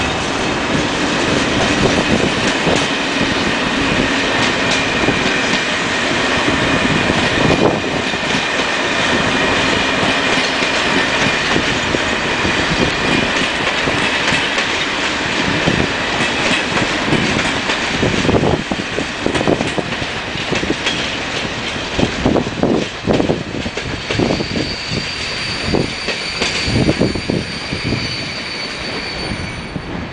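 ČD class 560 electric multiple unit rolling slowly past through station trackwork. Its wheels squeal in a thin high tone through the first half. From about halfway they clack irregularly over points and rail joints, with a fainter high squeal near the end.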